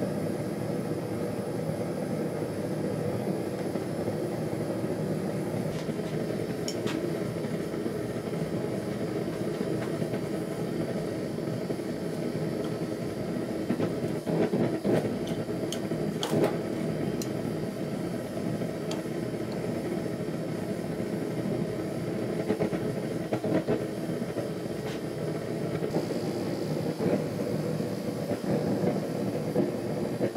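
Forge burner running steadily while steel is heated, with a few metal clinks from the tongs handling the blade partway through.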